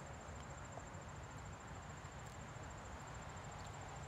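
Faint, steady high-pitched trilling of crickets, with no other distinct event.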